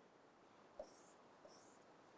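Near silence, with two faint short strokes of a marker pen on a whiteboard, about a second in and half a second later.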